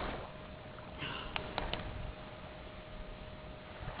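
Quiet background noise: a low rumble and hiss under a faint steady hum, with a sharp click at the start and a few faint clicks about a second in.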